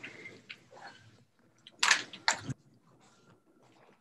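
Rustling and handling noise close to a table microphone, with two sharp knocks about half a second apart just before the two-second mark.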